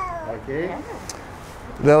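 A toddler's short, high-pitched whining cries: two brief wails with sliding pitch in the first second, the child fussing while held at the font. A man's voice begins speaking near the end.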